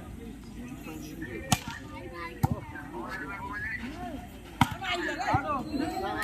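A volleyball struck by hand four times in a rally, sharp slaps spaced unevenly, the first two the loudest, over scattered shouts and chatter of players and spectators.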